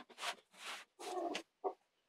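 Four short, faint scratchy strokes of a blade cutting a sheet of cellophane along a metal ruler.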